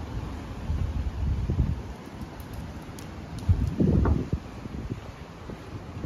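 Wind buffeting the microphone in gusts, a low rumble that swells about a second in and again, louder, around four seconds, over steady outdoor background noise.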